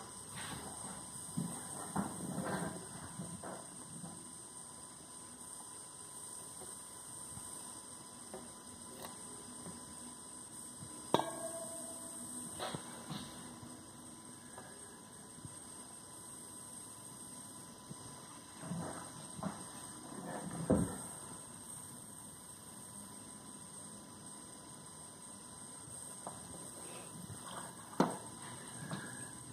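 Handling noise of a steel machete and knives on a wooden table: a sharp knock about eleven seconds in, another lighter one soon after, and a few dull thuds around twenty seconds, over a faint steady hum.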